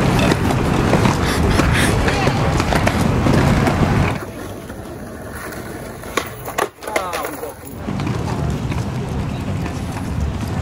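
Skateboards on a walkway: a few sharp clacks of boards striking the ground, close together about six to seven seconds in, with voices. Before and after this, a louder steady rushing noise.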